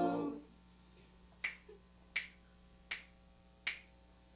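Humming voices die away, then four finger snaps follow at an even beat about three-quarters of a second apart.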